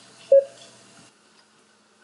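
A single short electronic beep from a 2N Helios IP Vario intercom as its right-hand button is pressed, about a third of a second in. It is the last of five presses that make the unit announce its IP address.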